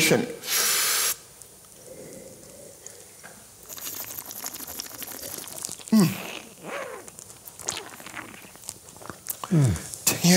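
Wine tasted by aspiration: a sharp, hissing slurp of air drawn through a mouthful of wine, lasting under a second, about half a second in. A fainter, longer slurp follows around four seconds in.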